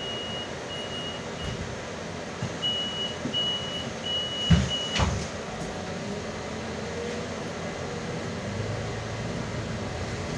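Door-closing warning of a Solaris Urbino 18 articulated city bus: a high beep repeated about seven times over the first five seconds, ended by two thumps as the doors shut. Then the bus's steady running hum as it pulls away.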